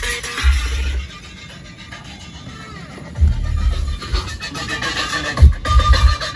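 Electronic dance music with deep, pulsing bass played through a car stereo with a Sony Xplod subwoofer. The bass drops out about a second in and comes back after about two seconds.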